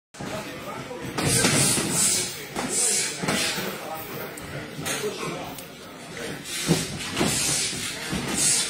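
Boxing sparring: gloves landing in irregular flurries of sharp hits, with short hissing bursts between them and voices in the gym.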